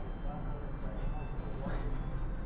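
Faint distant voice and music-like calling from a passing street corn (elote) vendor, over a low steady rumble.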